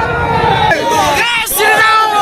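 A large crowd of protesters shouting together, many voices overlapping.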